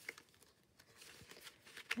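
Faint rustling of paper card pages being handled and bent into a curve, with a few light clicks near the end.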